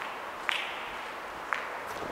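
Two sharp footsteps on a bare concrete floor, about a second apart, each echoing briefly in the hard-walled space, over a steady background hiss.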